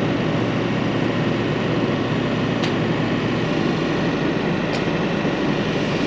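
Steady mechanical hum filling a semi-truck cab, even and unbroken, with two faint clicks in the middle.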